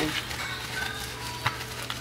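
Light crackly rustling of green artificial moss being handled and pressed into place, with a single sharp click about one and a half seconds in.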